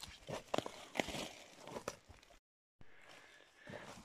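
Dry oak leaves and pine needles on the forest floor rustling and crackling as they are handled, with a few sharp snaps in the first two seconds. The sound drops out completely for a moment a little past halfway.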